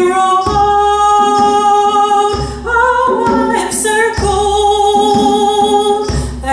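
A woman singing long, held notes, with a hand drum struck in a slow, steady beat: a deep stroke about every two seconds.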